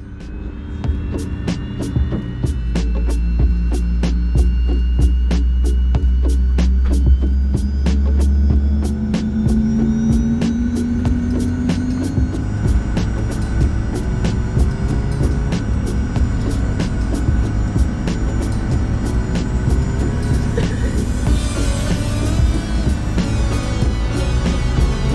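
Rolls-Royce Tay turbofan of a Fokker 70 starting up, heard from inside the cabin: a deep hum and a whine that rises slowly in pitch as the engine spools up. Evenly spaced ticks, a few each second, run through it.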